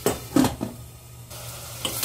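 Glass pot lid knocking against the rim of a stainless steel saucepan as it is lifted off, a few sharp clinks in the first half-second, over faint sizzling of onions frying in oil.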